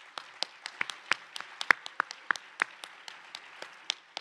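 Audience applauding, with sharp individual claps close to the microphone standing out, several a second.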